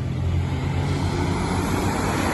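Street traffic with a bus passing close by: a low steady engine drone under the hiss of tyres on the road, the hiss growing stronger in the second half.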